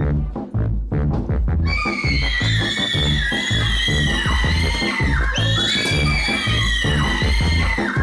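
Background music with a steady bass beat; from about two seconds in, several children scream over it in long, high, wavering shrieks.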